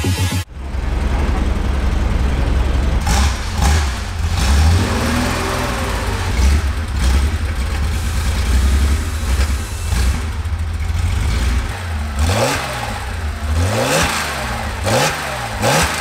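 Air-cooled flat-six of a 1965 Porsche 911 running with a deep rumble, then revved up and down several times in quick succession over the last few seconds. It is being checked for a fault that may lie in the spark plugs.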